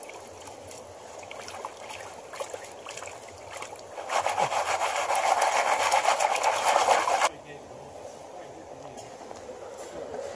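Plastic gold pan being shaken and swirled under shallow creek water to wash gravel out of it: a steady stream trickle, then about four seconds in a loud, rapid sloshing for some three seconds that stops abruptly.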